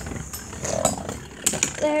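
Scattered light clicks and knocks of Beyblade tops and launchers being handled and readied for launch. A child's laugh comes in near the end.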